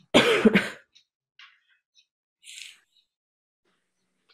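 A person clearing their throat into a microphone, a short two-part rasp right at the start, followed by a few faint small noises.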